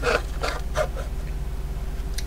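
Faint clicks and rubbing of hard plastic DeWalt battery packs being turned over in the hands, a few light ticks in the first second, over a steady low hum.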